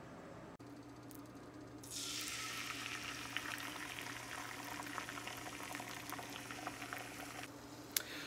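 Beaten eggs poured into a hot nonstick frying pan, sizzling in the bubbling fat with small pops; the sizzle comes in about two seconds in and holds steady.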